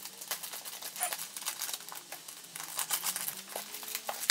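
Scissors cutting open the packaging of a mailed box, then the packaging rustling and crinkling as it is pulled open, a run of short snips and crackles.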